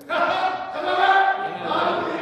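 A group of voices singing together in church worship, coming in sharply at the start and held on sustained, overlapping pitches.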